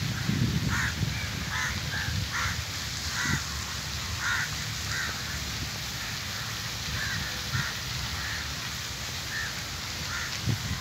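Crows cawing, short calls repeating every half second to a second, over a low rumble.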